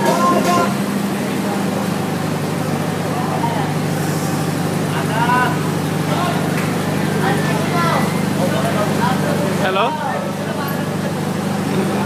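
A steady low hum, like a running motor, under scattered background voices.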